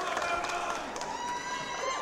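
A high-pitched voice letting out a long, held shriek from about halfway through to near the end, over the hubbub of a wrestling crowd.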